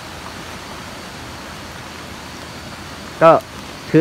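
Steady, even outdoor background hiss with no distinct events, ending about three seconds in when a man starts speaking again.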